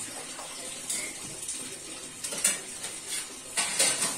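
Muddy water splashing and sloshing around a bore pipe as hands work in the flooded pit, with a few sharper splashes about a second in, around two and a half seconds and near the end.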